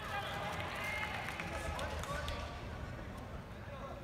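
Indistinct voices talking over a low steady rumble.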